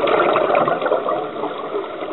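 Scuba diver's exhaled bubbles from the regulator, bubbling and gurgling past the underwater camera, easing off a little in the second half.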